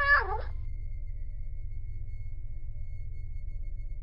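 A domestic cat's meow, tailing off with a falling pitch in the first half second, followed by a steady low hum with a faint high held tone.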